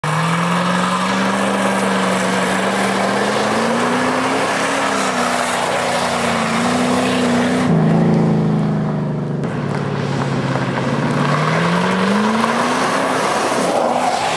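Ford sedan engine held at high revs with the rear tyres spinning on gravel in a burnout, the engine note rising and falling. About eight seconds in the sound changes abruptly, then the engine note drops and climbs again.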